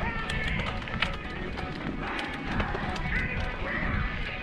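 Mountain bike rolling over loose, gravelly dirt singletrack, with frequent sharp clicks and rattles from stones and the bike over a low rumble. Music plays underneath.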